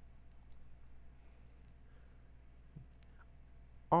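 A few faint, scattered clicks from working a computer's controls, over a low steady hum.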